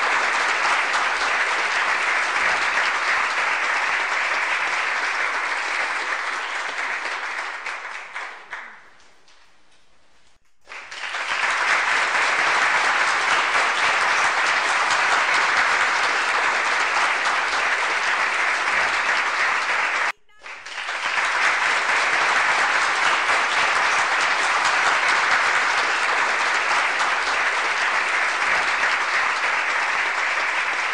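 Applause: many hands clapping steadily. It fades out about nine seconds in, starts again after a short gap, and breaks off for a moment about twenty seconds in.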